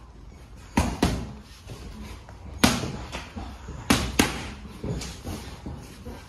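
Boxing gloves smacking into focus mitts during pad work: a quick one-two about a second in, a single hard strike near the middle, another quick pair a little later, then a run of lighter hits.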